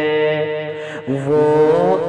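A man singing an Urdu naat, a devotional poem in praise of the Prophet Muhammad, in long held, drawn-out notes. There is a brief break for breath about a second in before the next note.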